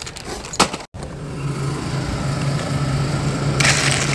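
A steady low mechanical hum. Near the end comes a short crinkle of a plastic bag of frozen fruit being handled. There is a sharp click just before the hum begins.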